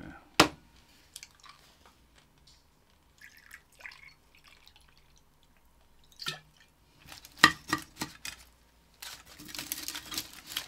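Brandy poured from a bottle into a glass shot glass, a faint liquid trickle, with sharp clicks of glass and bottle set down on the table.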